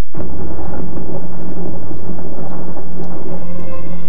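Thunder and heavy rain, a storm sound effect in a TV commercial, starting sharply about a quarter second in after a brief silence, with a low steady hum underneath.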